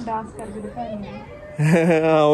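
A person's voice: soft talk at the start, then a loud, drawn-out call about one and a half seconds in.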